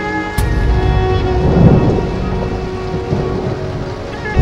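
Heavy rain with a sharp thunderclap about half a second in, followed by a low rumble of thunder that swells and then fades. Steady background music tones run underneath.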